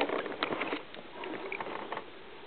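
Small splashes and water sloshing as a northern pike is held in the water over the side of a boat and released, with a few sharp clicks in the first second.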